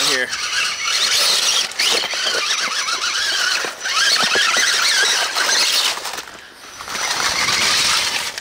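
Electric motor and gear drive of a custom Axial Wraith-based RC rock crawler whining, the pitch wavering up and down with the throttle, with a brief lull about six and a half seconds in.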